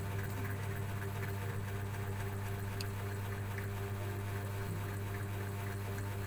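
A steady low hum with a few even overtones.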